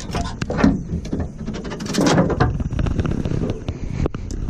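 Irregular knocks, clicks and rattles of fishing rods and gear being handled and set in place.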